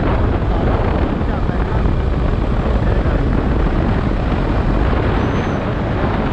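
KTM RC 390's single-cylinder engine running under heavy wind rush on the microphone as the motorcycle rides at around 40 km/h and slows.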